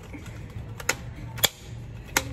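Two sharp plastic clacks, about half a second apart, from a red toy lightsaber being swung about, over a steady low hum.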